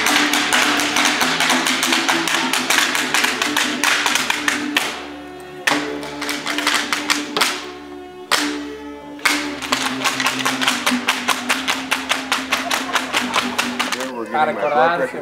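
A folk dancer's sandals stamping rapidly and evenly on stone paving, several strikes a second, over live violin music. The stamping breaks off briefly about five and again about eight seconds in.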